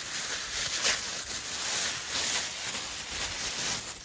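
Mylar space blanket crinkling and rustling as it is crumpled and pushed between poncho poles, with a steady crackle that keeps on throughout.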